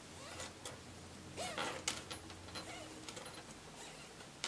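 Quiet, faint rubbing and small clicks of a polishing cloth being worked over a tarnished sterling silver piece, with a brief faint vocal murmur about a second and a half in.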